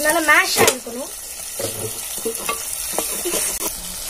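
Shallots, tomatoes and green chillies sizzling in hot oil in a clay pot. A wooden spoon stirring them gives a few light knocks against the pot.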